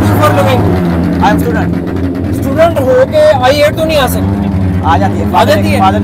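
People talking close by, over a steady low hum.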